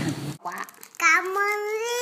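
A toddler's drawn-out, sing-song "thank you", the last vowel held long and rising slightly, starting about a second in after a brief gap.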